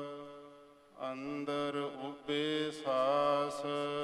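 A man chanting Gurbani verses of the Hukamnama in a slow, melodic recitation, holding long steady notes. The voice fades away in the first second and comes back about a second in, with a few bends in pitch.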